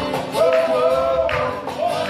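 Live music: a man singing long held notes over a strummed acoustic guitar, with keyboard accompaniment.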